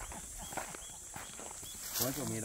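Footsteps of several people walking on a dry dirt and grass trail, crunching irregularly, with about four short high chirps and a steady high-pitched buzz behind them.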